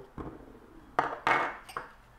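A small glass spice bowl being handled over a stainless-steel saucepan as ground cinnamon is tipped out of it: a soft knock at the start, then two sharp glassy knocks about a second in.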